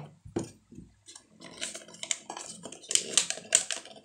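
Paper crinkling and rustling with a quick run of small clicks, as paper is handled and fitted over the end of a cardboard tube with a rubber band. It gets busier about a second in.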